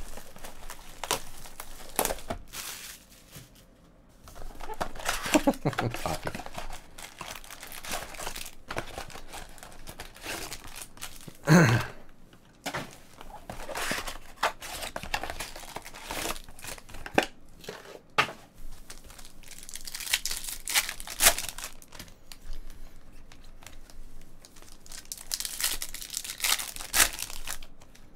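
Plastic shrink-wrap being torn off a cardboard trading-card box and crumpled, then the box being opened: an irregular run of crinkling, tearing and sharp crackles. One short, louder pitched sound comes about halfway through.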